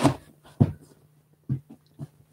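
A few brief, soft, dull sounds with quiet gaps between them as cushions are put down on a chair seat.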